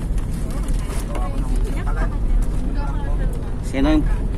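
Steady low engine and road rumble inside the cabin of a moving passenger van, with passengers' voices faint underneath. A woman starts speaking near the end.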